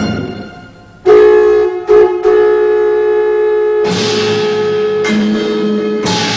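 Chinese traditional drum-and-wind ensemble music: the music fades down, then about a second in the winds come in loud on a long held note with two brief breaks, and a bright crash of percussion joins near four seconds.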